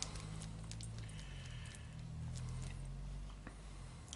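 Faint taps and scrapes of a small mixing stick stirring a puddle of epoxy resin and metal powder on a wooden board, over a steady low hum.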